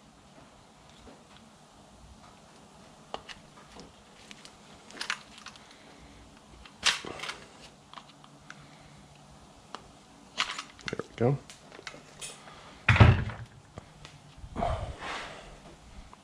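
Scattered small clicks and knocks of plastic and hardened rubber as an Echo CS-360T chainsaw's old fuel line and tank grommet are worked through the fuel-tank hole, with a louder knock about two-thirds of the way in. The rubber is almost as hard as a rock: a grommet shrunk with age that no longer seals the tank.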